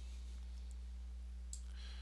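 A single sharp click about one and a half seconds in, over a steady low electrical hum, followed by a soft breathy noise near the end.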